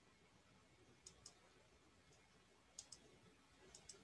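Near silence with a few faint computer mouse clicks, mostly in quick pairs: about a second in, near three seconds, and again near the end.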